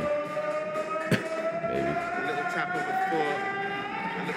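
Music from the dance-battle video's soundtrack: one long held tone slowly rising in pitch, with a voice speaking briefly over it and a single sharp click about a second in.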